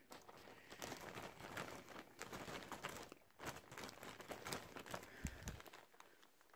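Faint rustling and light clicking of plastic pacifiers being handled and sorted through by hand, with a soft bump near the end.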